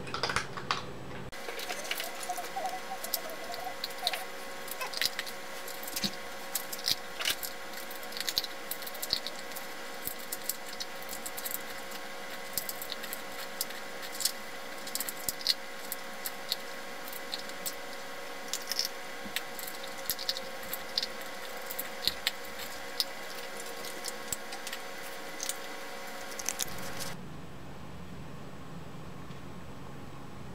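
Husky puppy eating dry kibble from a bowl: irregular crunching and sharp clicks, several a second, as the food is chewed and knocked about in the bowl. A steady hum runs underneath.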